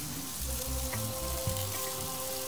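Barbecue-sauced chicken pieces sizzling steadily on a hot grill grate, over background music with a regular low beat.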